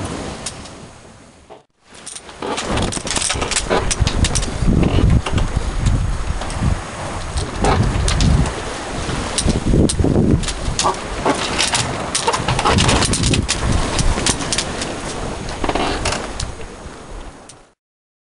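Wind buffeting the microphone on a yacht under sail in a fresh breeze, in loud, gusty surges with the rush of the sea. There is a short break about two seconds in, and the sound cuts off just before the end.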